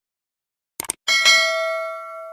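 Two quick mouse-click sound effects, then a bell ding that rings on and slowly fades: the stock sound of a subscribe-button click and notification bell.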